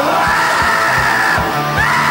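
Punk rock band playing live: a shouted vocal holds two long notes over a steady drum beat and bass guitar.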